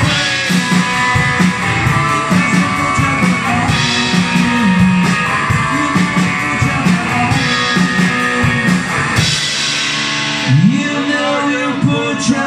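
Live rock played on an electric guitar and a Ludwig drum kit, fast and steady with regular drum and cymbal hits. The cymbal wash thins out about nine seconds in, and a rising slide follows near the end.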